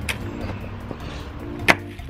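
A raw whole turkey thrown onto a wooden table, landing with a single sharp thump near the end, over background music.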